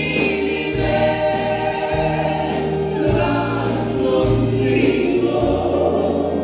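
Live pop ballad: a woman sings the lead, backed by vocalists in harmony and a band with keyboards. The notes are long and held over a bass line that moves about once a second.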